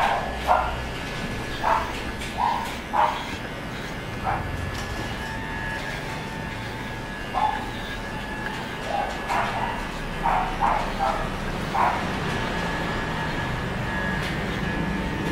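A small dog barking in short, sharp yips, about a dozen in two bouts with a pause between, over the faint steady hum of an electric pet hair clipper.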